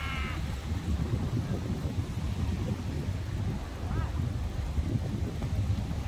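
Steady low outdoor rumble, with a brief wavering high-pitched voice at the very start.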